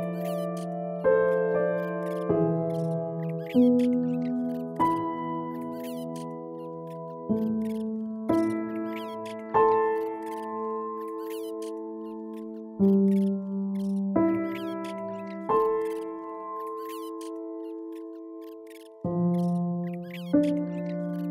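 Slow, calm piano music: single notes and chords struck every one to two seconds, each ringing on and fading. Faint, short high chirps run through it.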